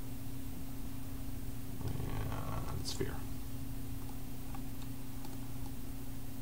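A steady low hum, with a brief faint mutter or breath about two to three seconds in.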